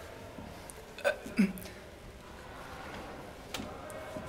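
A person's voice: two short non-word vocal sounds about a second in, the second dropping in pitch, then a faint click near the end, over low room tone.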